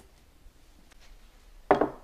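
Quiet kitchen room tone, then a woman's voice starts near the end.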